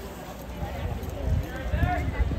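People talking, with a few low thuds from a horse's hooves shifting on wood-chip ground.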